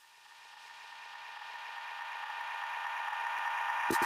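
A sustained electronic chord with hiss, swelling steadily louder as a build-up riser, broken off sharply just before the end.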